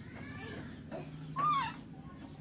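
A baby macaque gives short high calls. A faint one comes early, and a louder one about one and a half seconds in rises and then drops in pitch.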